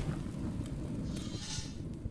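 A low, untuned rumbling noise with a faint crackle and no melody.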